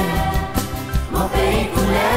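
Children's choir singing a song over an instrumental backing with a steady bass line.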